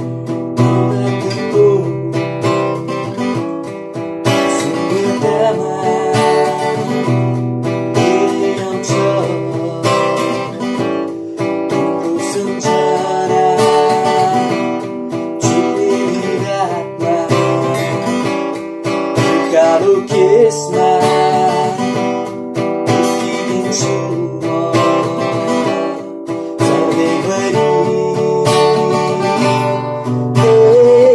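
An acoustic guitar strummed steadily as accompaniment while a man sings over it.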